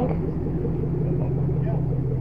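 A car engine running at a steady low pitch, like a parked car idling.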